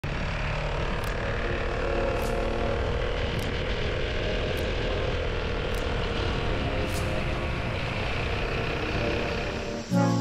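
Riding noise from a BMW C 400 X maxi-scooter under way: a steady rush of wind on the camera microphone over the hum of its single-cylinder engine. Faint high ticks come a little over once a second.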